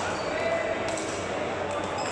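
Badminton hall during play on several courts: a few sharp racket-on-shuttlecock strikes and short shoe squeaks on the court floor over a steady murmur of voices.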